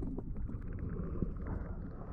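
Underwater sound heard through an action camera's waterproof housing: a steady muffled low rumble of moving water with scattered faint clicks.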